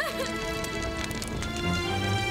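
Dramatic background music: a sustained, held chord of several steady tones.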